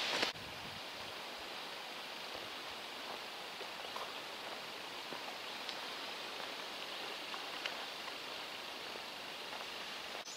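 Steady soft hiss of a light breeze moving through woodland trees, with a few faint ticks.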